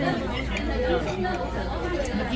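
People talking over dinner, with the general chatter of other diners in the dining room behind them.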